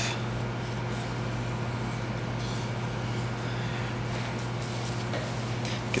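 A steady low hum with faint, even room noise.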